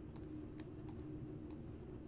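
Several faint clicks of a computer mouse while the gradient tool is dragged, over a low steady hum.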